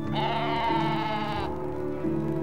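Cartoon donkey's short, wavering, bleat-like cry, about a second and a half long and falling slightly in pitch, over soft orchestral music.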